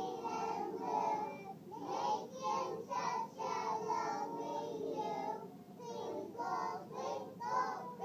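A class of three-year-old children singing a song together.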